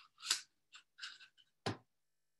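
Metal ski-pole splint sleeve scraping and clicking against a metal pole section as it is slid and handled: a few short, faint scrapes, then a sharper knock near the end.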